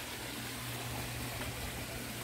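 Steady running water from a backyard fish-tank filtration system, with a low steady hum underneath.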